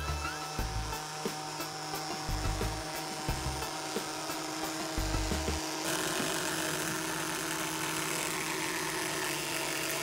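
Small battery-powered vibration motors buzzing steadily under DIY vibrating toys that walk on bent pin legs across a tabletop. A few low thumps come in the first half.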